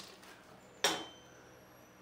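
A single sharp metallic clink from a small metal rack fitting knocking against metal, about a second in, with a short high ring after it.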